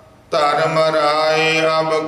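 Sikh kirtan singing: men chanting a shabad to steady harmonium chords. The music comes back in suddenly about a third of a second in, after a brief hush between lines.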